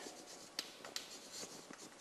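Chalk scratching and tapping faintly on a blackboard as words are written by hand, with a few sharper taps, the clearest about half a second and a second in.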